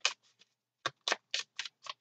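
A deck of tarot cards being shuffled by hand: a quick series of short, crisp card snaps, several a second, with a brief pause about half a second in.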